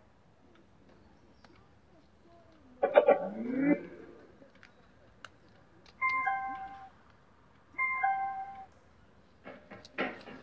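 Electronic prompt sounds from a replica JBL Charge-style Bluetooth speaker: a louder rising start-up tone about three seconds in, then a short descending chime of stepped notes played twice as a USB flash drive is plugged in. Playback through the speaker begins near the end.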